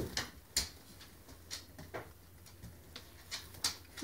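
Light, irregular crinkles and clicks of clear plastic wrap being handled around the base of a resin model horse as it is turned in the hands.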